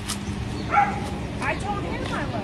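A dog giving a few short, high yipping barks, the first about three-quarters of a second in and two more close together near the end, over a steady low hum of street noise.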